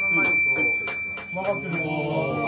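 People talking, over a steady, unchanging high-pitched whine.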